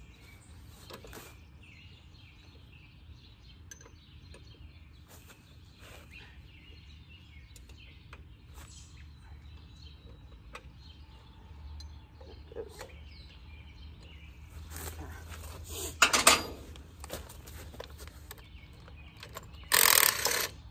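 A wrench and metal parts clicking and clanking on a Farmall A tractor's governor as its bolts are worked loose, with birds chirping in the background. There is a loud metal clank about 16 seconds in and another at the very end.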